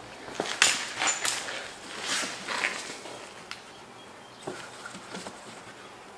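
Short scrapes, rustles and light knocks as the rubber air spring bellows of a Mercedes W211 rear axle is pushed by gloved hands into its lower seat. The noises come thickest in the first three seconds and grow sparser after.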